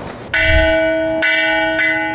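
A large ceremonial bell struck three times: first about a third of a second in, again about a second later and once more half a second after that, each stroke ringing on.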